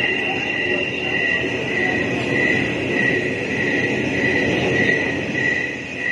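Large crowd of spectators chattering in a steady murmur under a covered court, with a faint high tone pulsing about twice a second.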